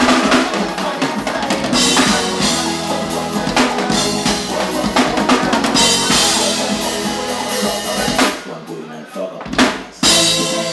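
Live band playing through a large outdoor PA, with the drum kit loudest (kick, snare and rimshot hits) over sustained keyboard notes. Near the end the music thins out briefly, then a single loud hit.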